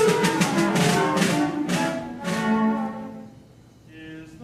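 Small opera instrumental ensemble playing an interlude between sung lines: a run of quick, accented strokes over the first two seconds, then a few held notes that fade away near the end.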